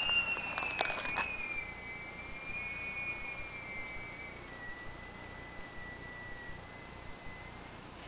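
A faint steady high-pitched whine, with a few sharp crackling clicks about a second in from plastic trading-card binder sleeves being handled.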